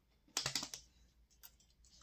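A quick run of four or five soft clicks about a third of a second in, then one faint tick, otherwise near quiet.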